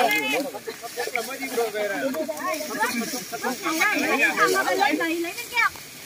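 Several people talking and calling out at once, none of it clear, over a faint hiss.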